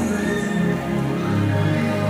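Slow worship music between sung lines: sustained keyboard chords over a low bass, with no singing, the chord shifting about a second in.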